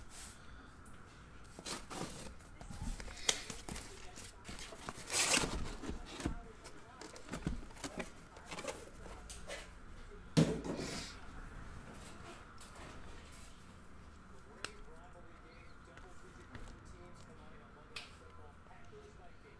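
Cardboard shipping case being opened and card boxes being lifted out and stacked: scattered rustles, scrapes and knocks of cardboard being handled, with a louder rustle about five seconds in and the loudest knock about ten seconds in.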